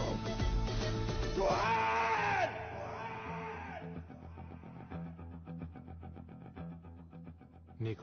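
Film background score: a voice rises and falls over the music for the first two and a half seconds, then the music drops to a quieter rhythmic bed.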